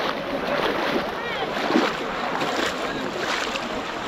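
Continuous splashing and sloshing of shallow pond water as many people wade through it, with faint shouting voices in the background.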